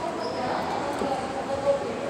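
Indistinct voices echoing in a large indoor hall, with no words made out, and a single sharp tap about three-quarters of the way through.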